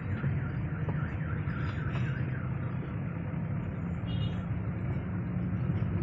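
Steady engine and road rumble of a car driving slowly, heard from inside the cabin. Over it, during the first two seconds, comes a warbling alarm-like tone that rises and falls about four times a second.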